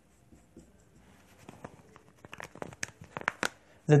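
Whiteboard marker scratching across a whiteboard in a quick series of short strokes while hatching in an area, the strokes coming faster and louder through the second half.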